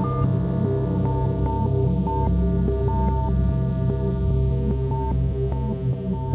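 Live electronic music from a modular synthesizer and Osmose keyboard synth: a deep, throbbing bass drone holds steady while short high notes are picked out above it at irregular intervals.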